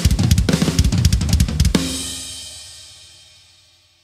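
Drum kit playing a fast fill of snare and bass drum hits, ending a little under two seconds in on a final crash that rings on and fades away.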